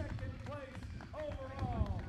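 Indistinct voices of people at the finish area, with pitch rising and falling as in calling out, over a low uneven rumble.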